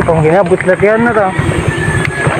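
A person's voice, drawn out and wavering in pitch, over a steady low rumble.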